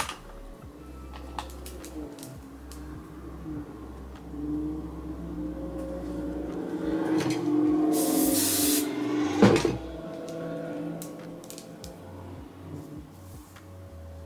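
Aerosol spray can giving one hiss of about a second, about eight seconds in, followed by a sharp click. Soft background music plays throughout.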